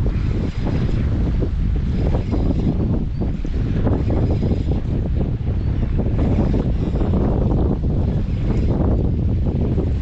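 Strong wind buffeting the microphone, a loud, steady rumble, over small waves washing against shoreline rocks.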